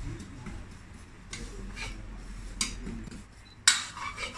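Metal spoon scraping and knocking against a wok as sesame seeds are stirred while dry-roasting with no oil: a few light scrapes, then one sharp knock near the end.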